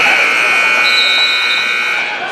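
Gymnasium scoreboard buzzer sounding one steady tone made of several pitches for about two seconds, then cutting off.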